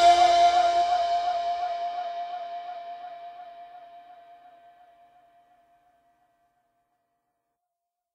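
The last held note of an electronic pop song ringing out on its own after the rest of the mix stops, a single tone with a slight waver that fades steadily and dies away about five seconds in.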